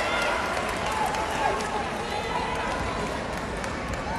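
Echoing voices and shouts in an indoor volleyball arena, over a steady hall hubbub.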